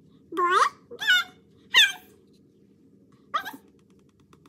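Speech only: three short, high-pitched words, "boy, girl, girl", naming picture cards, then a brief sound near the end.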